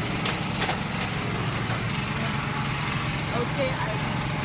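Steady, low mechanical hum of a small engine running evenly, with two or three sharp clicks in the first second.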